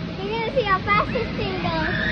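Children's voices laughing and calling out in play, high and rising and falling in pitch.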